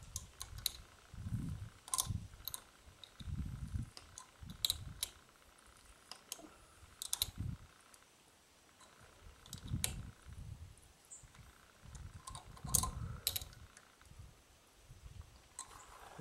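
A hand wrench tightens the nut on a stainless steel wedge anchor bolt set in concrete. It gives scattered metal clicks at irregular intervals, with soft low thumps in between.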